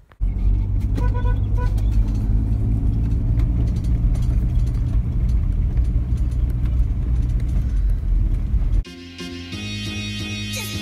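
Volvo 240 wagon with a leaking exhaust, driving, heard from inside the cabin as a loud, steady low rumble. Two short beeps sound about a second in. The rumble cuts off near the end, where guitar music comes in.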